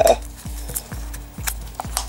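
Background music with a steady thumping beat, a little over two beats a second, over light clicks and rubbing as a rubber 1/14-scale truck tyre is worked by hand onto an aluminium alloy rim.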